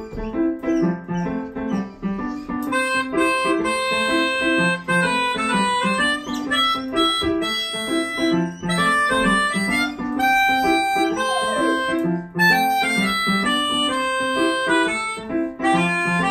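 Digital keyboard playing a repeating chord pattern. About two and a half seconds in, a melodica joins, playing a melody in long held reedy notes over it.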